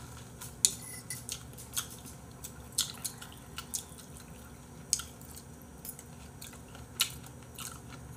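Scattered sharp clinks and taps of cutlery against dishes at a meal table, about eight in all at uneven intervals, the loudest about two-thirds of a second in, over a low, quiet background.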